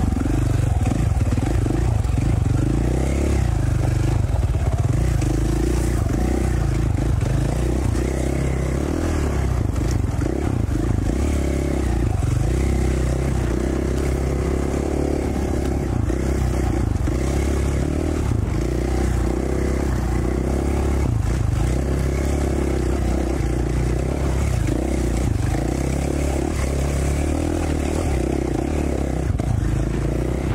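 2017 KTM 450 XC-F's single-cylinder four-stroke engine running at fairly steady low revs, with only small throttle changes, as the dirt bike is ridden slowly along a rocky single-track trail.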